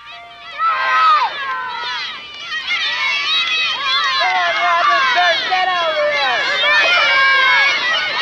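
Many children shouting and calling out at play, high voices overlapping without pause, starting about half a second in.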